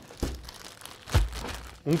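Crinkling plastic bag of frozen potato shapes being handled, with a deeper thump about a second in.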